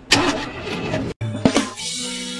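A loud burst of car engine noise, cut off sharply about a second in, then upbeat music with drum hits starts.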